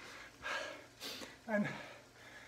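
A man breathing hard and panting after a maximal 20-minute cycling effort, out of breath: two heavy breaths, the second a sharp hissing one about a second in, then a short spoken 'and'.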